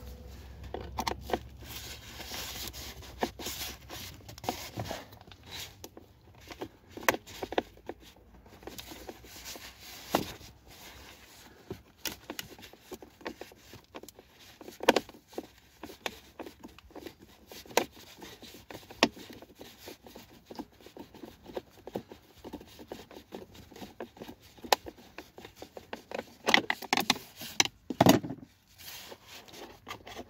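Irregular clicks, scrapes and rubbing of a screwdriver working the single mounting screw on the hazard relay's metal bracket, with hands handling the relay and surrounding plastic trim; a louder knock comes near the end.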